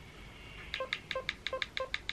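Philips Avent SCD501 baby monitor parent unit giving a quick run of short electronic beeps, about six a second, as its volume is turned up.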